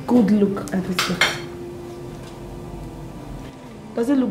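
Glass tableware clinking twice in quick succession about a second in.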